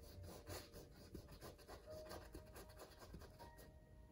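Faint strokes of a paintbrush with acrylic paint across canvas: a quick run of short brushing scrapes that stops shortly before the end.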